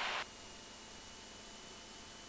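Faint, steady hiss of the cockpit headset intercom and radio audio line, with a few thin steady tones; a louder stretch of hiss cuts off abruptly about a quarter second in, as the line gates down after speech.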